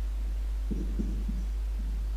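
A steady low electrical hum, with a few faint, muffled low sounds about a second in.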